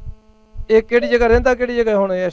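A man's voice holding one long drawn-out hum-like vowel for about a second and a half after a brief pause, its pitch steady and then dipping slightly at the end. A faint steady electrical hum runs underneath.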